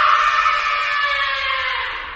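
A horror sound effect: a loud, high, sustained sound made of many tones at once, sinking slowly in pitch and fading away toward the end.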